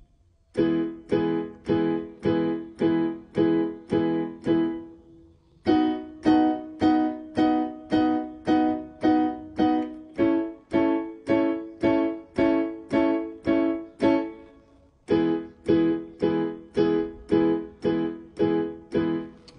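Electronic keyboard playing full major chords with both hands, each chord struck about eight times at roughly two strikes a second as a chord-change drill: E major, then B major, then A major, then back to E major.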